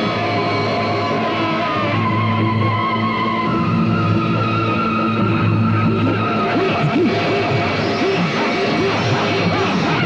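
Loud background music from the serial's score: a dense mix with several held notes and a busy, driving accompaniment. A run of short sliding figures comes through about two-thirds of the way in.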